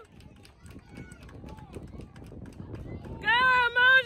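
A spectator yelling loudly in a high, drawn-out voice, cheering, starting about three seconds in; before that only faint outdoor background.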